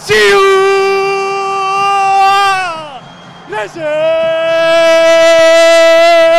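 A male football commentator's drawn-out goal shout: one long, high held yell that falls away after about three seconds, then a second long held yell a little lower in pitch, celebrating the goal just scored.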